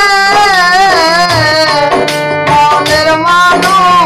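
Bengali Baul folk song: a singing voice carries a wavering, ornamented melody over drum and instrumental accompaniment.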